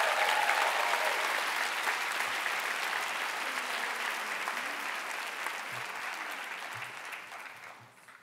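Theatre audience applauding, with a cheering voice near the start; the clapping fades out near the end.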